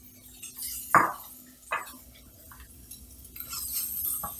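Kitchenware knocking and clinking: a sharp knock about a second in, then two lighter ones, as the onion bowl and a wooden spoon meet the saucepan, followed near the end by a soft hiss of onions being stirred in the pan.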